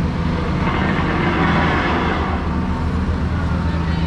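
A dump truck's engine running steadily, its tipper bed raised, with a noisy rush that swells and fades in the middle.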